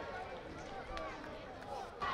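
Faint on-pitch sound of a football match: distant shouts from the players over a low field-microphone hiss, with one sharp knock about a second in.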